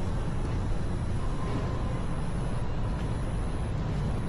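Steady outdoor background noise: a low rumble that holds level throughout, with no single event standing out.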